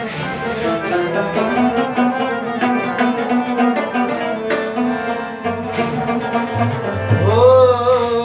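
Harmonium playing a sustained melody over tabla strokes in Pashto folk music. Near the end a singer's voice comes in, sliding up into a long held note.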